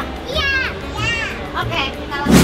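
High-pitched voices of young girls speaking in three short phrases.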